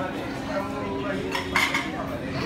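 Plates and cutlery clinking in a busy buffet restaurant, with a cluster of sharp clinks about one and a half seconds in over a murmur of diners' voices.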